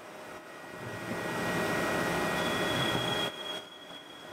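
Willemin-Macodel 408MT CNC mill-turn machine running a job inside its enclosure, cutting oil spraying over the tool and part: a steady rushing machine noise that swells about half a second in, with a high steady whine joining about halfway through, then falls away shortly before the end.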